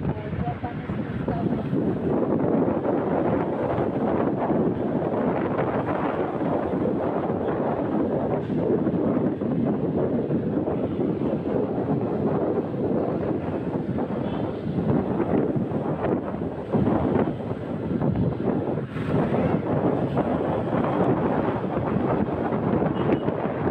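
Wind buffeting the microphone of a moving motorcycle, a steady rushing with frequent gusts, over the motorcycle's engine and road noise.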